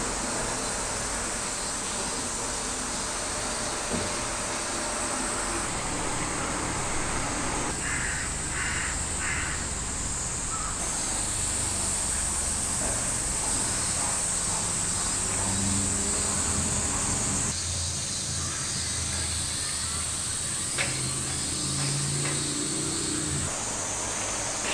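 A crow calling three times in quick succession about eight seconds in, over a steady high drone of summer insects.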